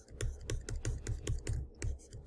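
Pen stylus tapping and stroking on a tablet screen while handwriting: a quick, uneven run of sharp clicks, about six a second.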